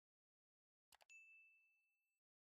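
Faint sound effects of a subscribe-button animation: a quick double click about a second in, then a single high bell ding that rings out and fades.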